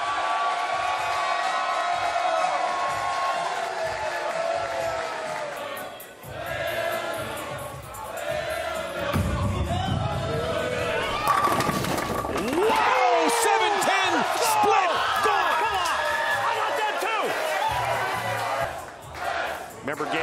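Bowling-centre crowd yelling and cheering. A brass bell is rung near the start. About nine seconds in, a bowling ball rolls down the lane and crashes into the pins for a strike a little after eleven seconds, and the cheering gets louder after the hit.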